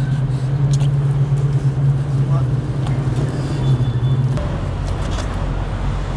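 A vehicle engine idling with a steady low hum, which cuts off suddenly about four seconds in, leaving a low traffic rumble.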